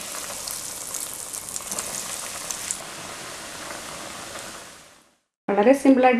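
Breadcrumb-coated chicken cutlet deep-frying in hot oil in a shallow pan: a steady sizzle with small crackles, fading out about five seconds in.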